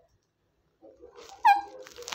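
Male Alexandrine parakeet giving one short, sharp call that drops in pitch, about one and a half seconds in, after a moment of near quiet.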